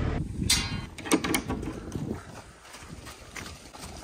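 Cows' hooves clopping on a muddy concrete yard as the cattle walk past. A sharp clatter comes about half a second in, with a couple more knocks around a second.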